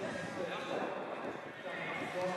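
Men's voices calling out and chatting across a football pitch, with no clear words, over the open-air background of the ground.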